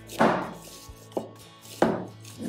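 Cleaver chopping shallots on a wooden cutting board: three sharp chops, the first just after the start, a lighter one past the middle and a strong one near the end.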